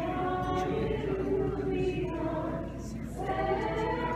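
Orthodox church choir singing unaccompanied, in long held notes, with a short break between phrases about three seconds in. It is the hymn sung while Communion is given.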